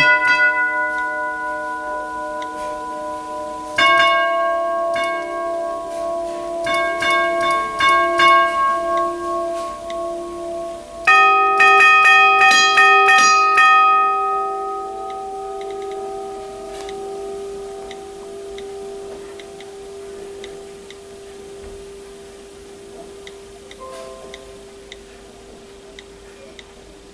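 Four-tube doorbell chime, its tubular bells struck by solenoids, playing a sequence of notes: a strike at the start, a run of strikes from about four to eight seconds in, the loudest cluster around eleven seconds, then the tones ring on and slowly fade.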